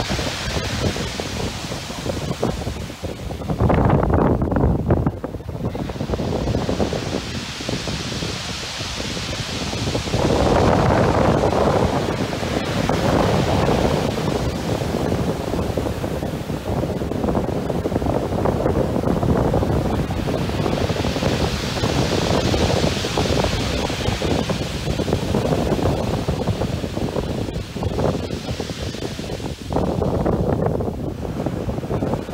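Heavy surf breaking and washing up a beach, mixed with strong gusty wind buffeting the microphone. The noise swells and eases in surges, two of them louder and lower than the rest.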